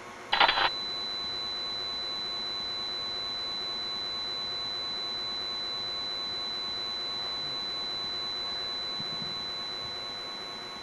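Tape-switch noise of found-footage video: a short sharp crackling click about half a second in, then a steady thin high-pitched whine over hiss, fading near the end.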